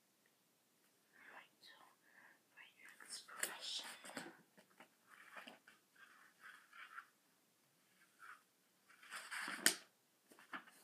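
A girl whispering to herself in short, broken bursts, starting about a second in, with no voiced tone, as if murmuring her homework under her breath. Two louder bursts of noise come around the middle and again just before the end.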